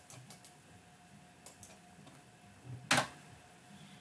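A few light clicks from a computer mouse and keyboard in the first second and a half, then one sharper, louder click about three seconds in, as a command is pasted into a terminal and entered.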